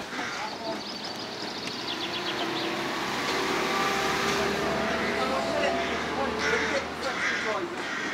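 Steam roller and its towed living van rolling slowly over a small bridge: a steady rumble with a drawn-out tone through the middle.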